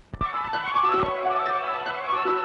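Opening theme music of a 1960s TV sitcom, with many instruments playing a bright melody. It starts just after a couple of faint knocks right at the beginning.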